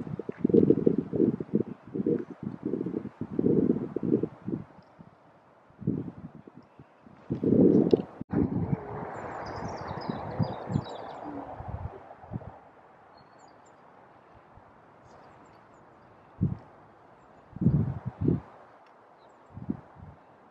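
Outdoor ambience: a series of low rumbling thumps on the microphone in the first few seconds and again near the end, with a few faint high bird chirps about halfway through.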